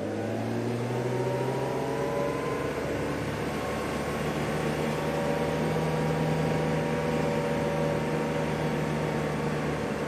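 Safari game-drive vehicle's engine running as it drives along. The engine note is steady, with slight rises and falls in pitch.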